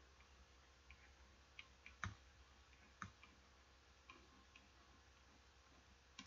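Near silence broken by a few faint, scattered clicks of a stylus tapping a pen tablet during handwriting. The clearest clicks come about two and three seconds in.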